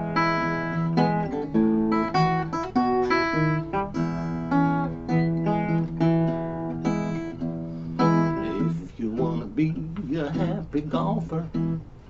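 Small-bodied acoustic guitar playing an instrumental break in a blues tune, a run of single picked notes and chords. It gets quieter in the last few seconds.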